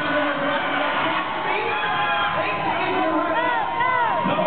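Arena crowd cheering and shouting, many voices overlapping, with a few high whoops that rise and fall near the end.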